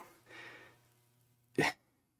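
A man's brief laugh: a faint breath, then one short, sharp burst of breath about a second and a half in.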